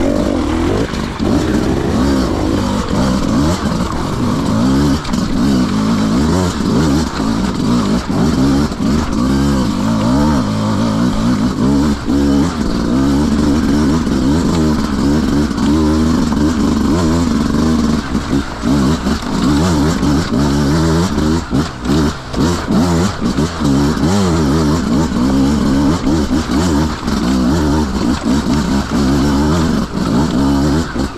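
Beta 200 RR two-stroke dirt bike engine revving up and down continuously as the throttle is worked over a rocky, wet stream bed. Several short dips in loudness come about two-thirds of the way through.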